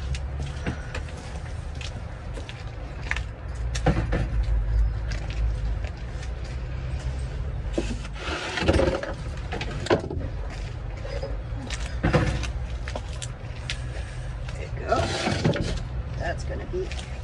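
Knocks and clatter of gear being handled and set down in a van's cargo area over a steady low rumble, with a few short stretches of indistinct talk.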